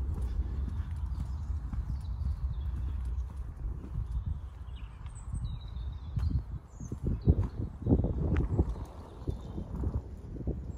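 Footsteps and rustling as someone pushes through dry undergrowth, with irregular thuds that get heavier about seven seconds in, over a steady low rumble of wind on the microphone. Faint bird chirps come now and then.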